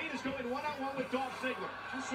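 Speech from a wrestling broadcast playing in the background, quieter than the voice close to the microphone: commentators talking over the match.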